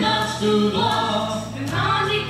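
A choir singing a song in French over instrumental accompaniment, with held low notes changing chord about once a second.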